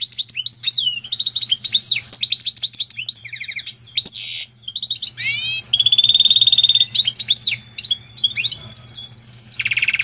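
Goldfinch × canary hybrid (mule) singing a long, varied song of fast trills, rising whistled glides and repeated notes, with one long steady trill about six seconds in.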